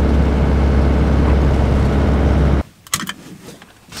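Inside the cab of a 1995 Fiat Ducato 2.5 TDI motorhome on the move along a wet road: a loud, steady low engine drone with road and tyre noise. It cuts off abruptly about two and a half seconds in, leaving a quiet stretch with a few faint knocks.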